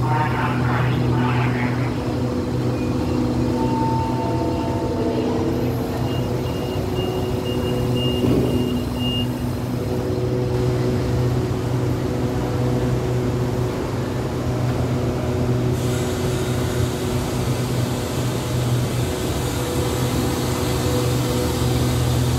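Steady low diesel hum of a standing passenger express train idling at the platform, with a couple of faint whining tones above it.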